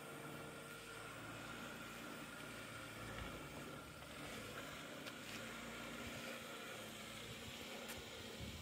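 Jeep Wrangler's engine running faintly at low revs as it crawls slowly over bare granite rock, with its pitch shifting slightly as the throttle changes.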